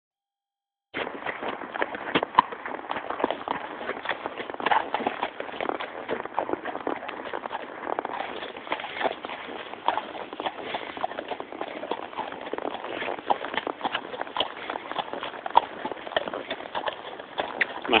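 A horse's hooves clip-clopping on a dirt track, heard from the saddle as a dense run of irregular knocks, starting about a second in.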